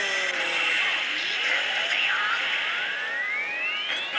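Pachislot machine sound effects during an on-screen presentation: a short falling tone at the start, then one long rising sweep climbing steadily for about three seconds. Underneath runs the steady din of a pachislot hall.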